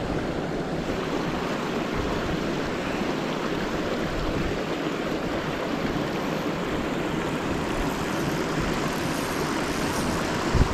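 Steady rushing of fast river water, with whitewater churning close by.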